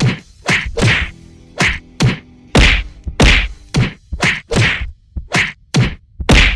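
Cartoon whack sound effects of a beating: a rapid, uneven run of about a dozen hard strikes, roughly two a second, each with a short swish.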